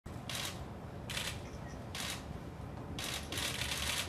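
Press photographers' camera shutters firing in rapid bursts: three short volleys about a second apart, then a continuous clatter of many shutters from about three seconds in.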